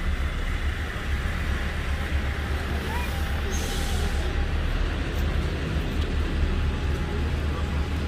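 Steady city-street background noise: traffic with a constant low rumble.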